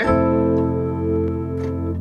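An F major seventh chord, with F, C and A in the left hand, struck once on an electronic keyboard with a piano sound and held so it rings on, slowly fading.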